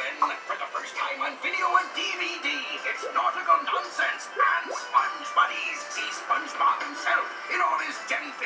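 Cartoon video trailer playing from a television: music with character voices. It sounds thin, with no bass, through the TV's speaker.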